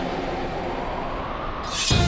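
A low, steady rumbling drone from a dramatic background score, with a few faint held tones. Near the end a rising whoosh swells up as the music comes in.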